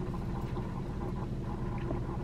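A steady low hum inside a car cabin, with a few faint mouth sounds as a soft iced mini doughnut is bitten and chewed.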